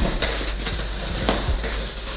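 Hands working on a large cardboard box: rubbing and scuffing on the cardboard with a few light knocks.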